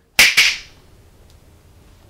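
Two finger snaps in quick succession, about a fifth of a second apart, near the start, followed by quiet room tone.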